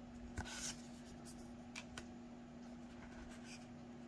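Tarot cards sliding and brushing against each other in the hand as the front card is moved behind the others: a brief soft scrape about half a second in and a few light ticks around two seconds, over a faint steady hum.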